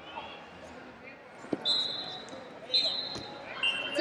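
Wrestlers grappling on a mat: two dull thumps, and three short high-pitched tones over the hum of a large hall.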